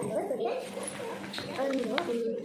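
Speech: a person talking, with no other clear sound.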